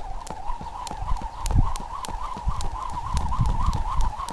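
Skipping rope slapping the asphalt in a steady rhythm, about three to four strokes a second, as sneakers land lightly with each jump. A faint steady whine runs underneath.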